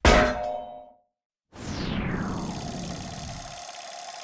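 Designed intro sound effects: a loud hit that rings with a single tone and dies away within about a second, then after a short gap a falling sweep that settles into a steady hum and fades out.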